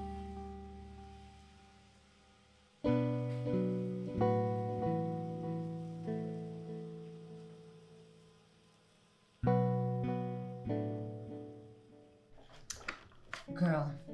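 Background film music: acoustic guitar chords plucked and left to ring out and fade, played in two phrases with a near-silent gap after the first. A few short sharp sounds come in near the end.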